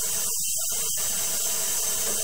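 Running water, a steady hissing rush.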